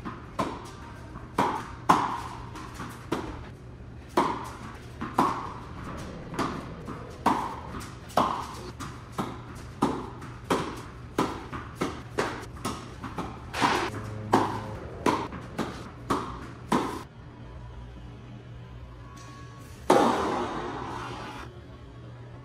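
Tennis balls struck by rackets and bouncing on an indoor hard court in a rally: a steady run of sharp pops, one to two a second, each with a short echo from the hall, stopping about seventeen seconds in. A single louder hit with a longer ring-out comes about three seconds later.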